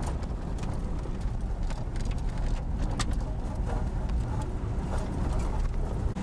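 Inside a Jeep driving over a rough dirt road: a steady low rumble of engine and road noise, with scattered knocks and rattles from the bumps.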